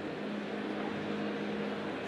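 Steady room tone of a presentation hall: an even background hiss with a faint constant hum, with no distinct events.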